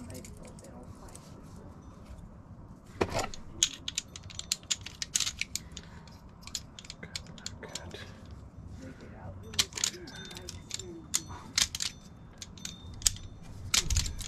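Small metal lock parts and keys clicking and clinking as a lock cylinder is handled and worked with a hand tool: a string of sharp metallic clicks, with louder knocks about three seconds in, around ten seconds and near the end.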